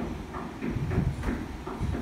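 Cajón played by hand in a steady groove: sharp slaps about three or four a second, with deep bass strokes about a second apart.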